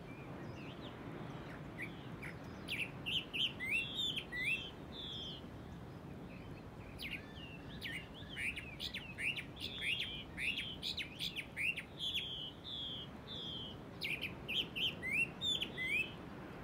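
Birds singing: quick, high chirping notes, some sliding up and some sliding down, in three runs of a few seconds each, over a faint steady hiss.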